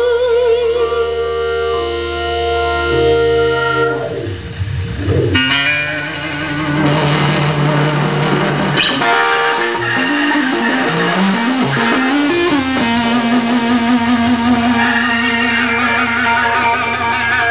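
Live blues-rock band with a distorted Fender Stratocaster taking the lead: long sustained notes, a swooping dive and rise in pitch about four seconds in, then bent, climbing phrases that settle into a long held note near the end.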